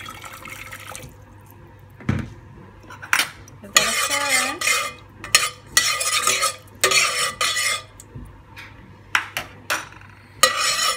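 Metal spoon stirring in a stainless steel pot of hot water to dissolve a stock cube, scraping and clinking against the pot in a run of strokes from about four seconds in. There is a single knock about two seconds in.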